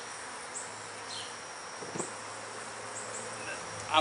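Honey bees buzzing steadily around an open hive box, with robber bees working the open hive. A faint click about two seconds in.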